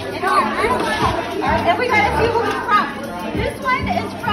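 Several children talking over one another over background music.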